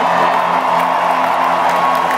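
Amplified rock band holding steady sustained notes through the arena PA, with a crowd cheering and whooping underneath.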